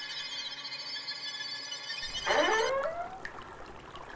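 A cartoon sound effect: a high, shimmering ringing that holds for about two and a half seconds, then fades as a short pitched glide follows.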